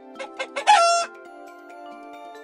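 Rooster crowing sound effect: three quick short calls, then one brief loud crow. A light background music tune plays under it.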